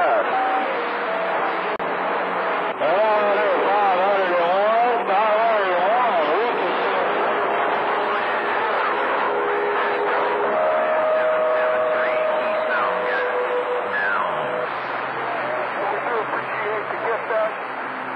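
CB radio receiving long-distance skip on channel 28 (27.285 MHz): a jumble of garbled, overlapping voices in static. A wavering tone comes in a few seconds in, and steady whistling tones are heard from about ten to fourteen seconds.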